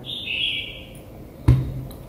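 Handling noise from a small plastic wifi camera: a brief hiss during the first second, then a single knock about one and a half seconds in as the camera is set back down on the desk.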